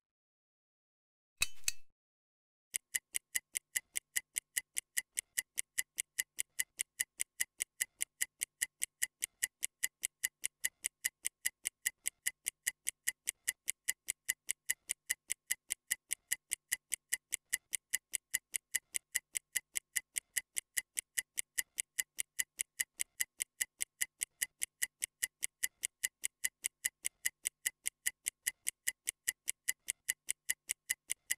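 Stopwatch-ticking sound effect counting down a workout rest period, with even, crisp ticks about three a second. The ticking starts nearly three seconds in, after a brief beep.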